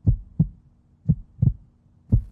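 Heartbeat sound effect for suspense: two double low thumps, lub-dub, about a second apart.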